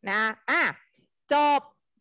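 Speech only: a woman saying three short words in Thai, with brief pauses between them.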